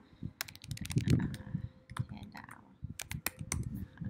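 Typing on a computer keyboard: a quick run of keystrokes in the first second, then scattered key clicks, as a method name is typed into a code editor.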